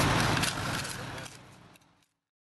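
Building-site background noise with a vehicle engine running, fading out steadily to silence near the end.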